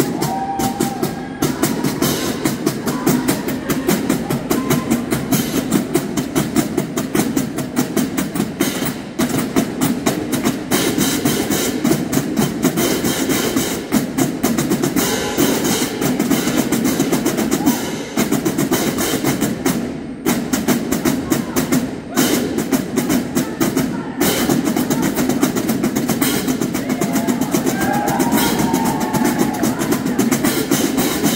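Marching drumline playing a fast, dense cadence on snare drums, tenor drums and bass drums, with hand cymbals, in a gymnasium. The playing cuts off sharply for short breaks several times in the second half.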